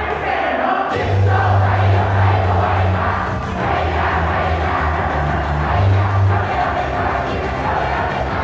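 Upbeat idol pop song playing loud through a PA, with a crowd of fans shouting chanted calls along with it. The bass beat drops out briefly just before a second in, then comes back.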